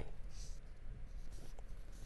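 Quiet studio pause: a steady low hum and faint hiss, with a brief soft rustle of a sheet of paper in the anchor's hand about a third of a second in.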